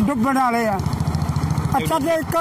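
A motor engine idling with a steady, rapid beat, heard under a man's voice and on its own when he pauses in the middle.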